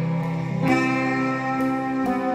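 Slow instrumental background music with long held notes; the chord changes about two thirds of a second in.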